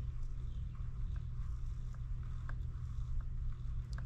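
Faint scattered ticks and light scraping as a small nitro RC carburetor's throttle arm and rotary barrel are worked slowly with a metal pick, over a steady low background hum.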